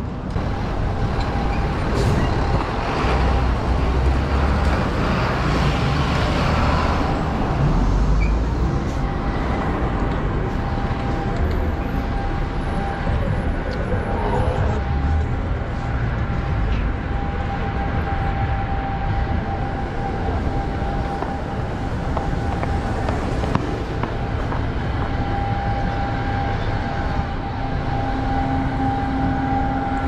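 City street traffic heard from a moving bicycle: a steady mix of car and truck noise with a deep rumble, plus a faint steady tone.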